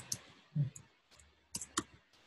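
Computer keyboard typing: a few separate keystroke clicks, then a quick run of three near the end.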